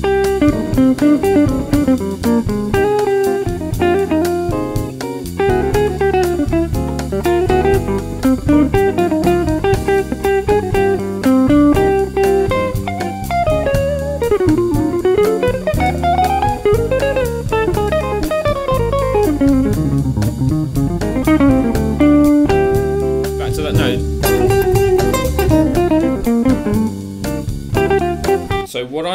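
Hollow-body electric jazz guitar improvising single-note melodic phrases over a bossa nova backing track of bass and drums. About halfway through, one phrase runs down and back up in a long scale run.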